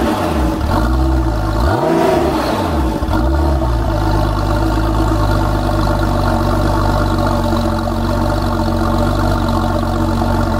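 Porsche 911 Turbo (993) air-cooled twin-turbo flat-six heard at the exhaust. It is blipped three times in quick succession, each rev rising and falling, then settles to a steady idle about four seconds in.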